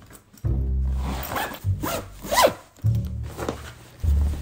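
A backpack zipper being pulled open in a few quick strokes, the pitch gliding up and down with each pull.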